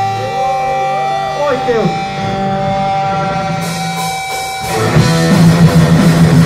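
Live punk band: sustained electric guitar notes with wavering, bending tones, then cymbal strokes come in about three and a half seconds in. About five seconds in, the full band comes in loud with distorted guitars and drums.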